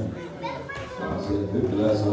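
Speech only: a man talking into a microphone in a large hall.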